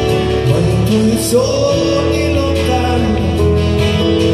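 Live acoustic ballad: acoustic guitar and keyboard playing sustained chords, with a woman singing a wavering, held line about a second in.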